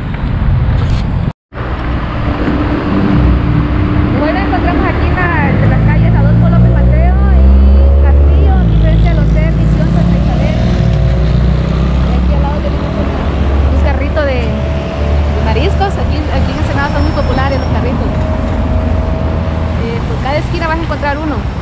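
Street traffic: a motor vehicle's engine running close by, its pitch rising slowly as it pulls away, over a steady low rumble, with voices in the background. The sound cuts out completely for a moment about a second and a half in.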